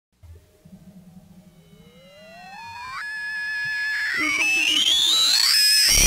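Electronic music intro: synthesizer tones glide upward in pitch and pile up into a growing, rising sweep that gets steadily louder, until the full track drops in at the very end.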